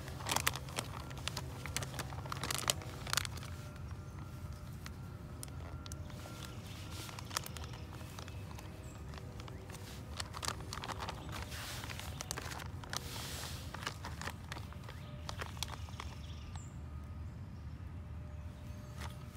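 Freeze-dried meal pouch crinkling in short, irregular bursts as it is handled and folded closed, over a faint steady low hum.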